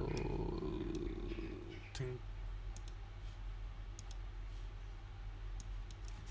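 Computer keyboard and mouse clicking: several sharp, scattered clicks in the second half, some in quick pairs, as a value is typed into a field, over a steady low electrical hum.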